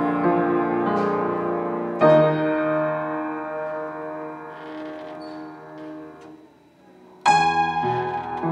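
Console piano playing a slow hymn arrangement. A chord is struck about two seconds in and left to fade almost to nothing, then a loud new chord comes in near the end.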